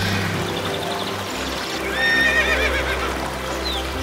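A horse whinnies with a wavering call between about two and three seconds in, over background music with held notes.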